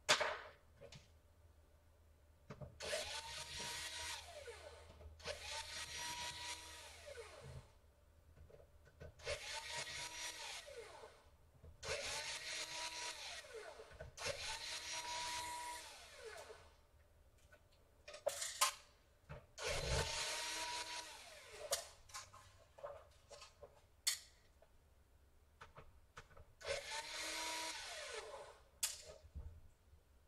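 Cordless electric screwdriver backing out the laptop's motherboard screws in seven short runs of about two seconds each; in each run the motor's whine rises, holds and winds down. A few light clicks fall between the runs.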